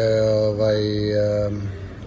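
A man's voice holding a long hesitation sound ("ehhh") at one steady pitch while searching for a word. It fades out about a second and a half in.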